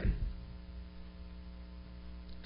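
Steady electrical mains hum, a low even buzz, picked up through the microphone and recording chain. The end of a man's last word fades out at the very start.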